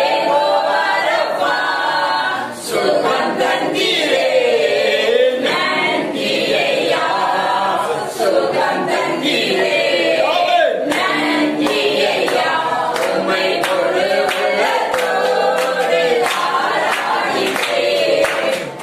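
A group of voices singing a worship song together, with hand claps keeping time.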